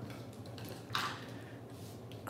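Cardstock being handled and slid across a craft mat, a brief soft rustle about a second in, over a faint steady room hum.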